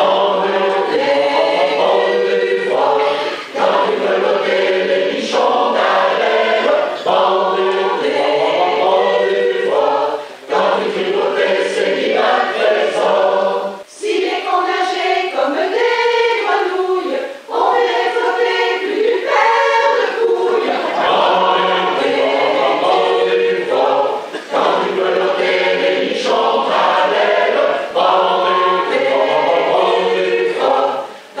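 Mixed choir of men and women singing a French bawdy song (chanson paillarde), in sung phrases broken by brief pauses.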